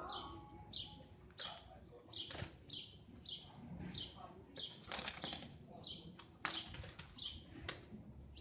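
Pigeons' wings clapping and flapping in a scuffle, in sharp irregular strokes, the loudest about six and a half seconds in. A small bird chirps steadily in the background, a high falling note roughly three times every two seconds.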